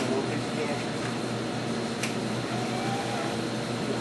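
Varian linear accelerator gantry rotating under pendant control, a steady mechanical whir with a low hum.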